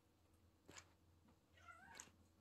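A kitten gives one short, faint, wavering meow near the end, after a soft click about two-thirds of a second in.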